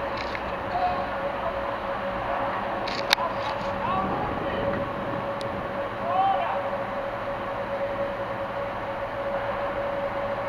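Rhaetian Railway Ge 4/4 III electric locomotive drawing a train slowly into the station: a steady electrical hum over rolling noise, with a sharp click about three seconds in.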